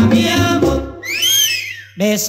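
Recorded Cuban bolero mambo by a vintage son conjunto: band and singing, which break off about a second in for a high whistle that swoops up and back down, before the band comes back in at the very end.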